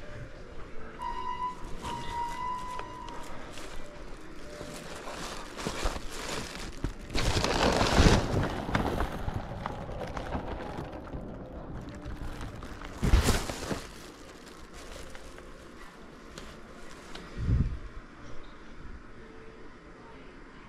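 Rustling and handling noise close to the microphone, with two loud bursts, one in the middle and one about two-thirds of the way in. A steady electronic tone lasts about two seconds early on, and a dull thump comes near the end.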